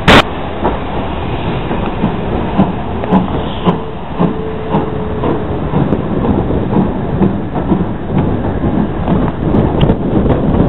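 Steam-hauled heritage passenger train running, heard from an open carriage window: steady rushing running noise with irregular clicks and knocks of the wheels over rail joints. A sharp crack right at the start is the loudest sound.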